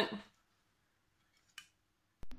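A plastic lid set down on the water in a glass bowl, making one faint, short slap about one and a half seconds in. Otherwise near silence.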